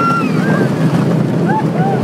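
Steady rush of wind on the phone microphone as the roller coaster train runs along its track. A rider's high, held scream ends just after the start, followed by a few short squeals.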